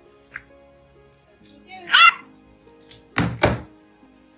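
A bulldog puppy gives one high, loud yip about halfway through. Near the end come two heavy thumps about a third of a second apart.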